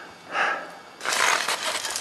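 A climber breathing hard at high altitude, one heavy breath about half a second in, then a longer rough, crunching stretch of steps on hard glacier snow.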